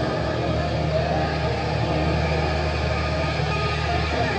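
Heavy metal band playing live through amps: distorted electric guitar and bass holding a steady low chord that rings on, with little drumming.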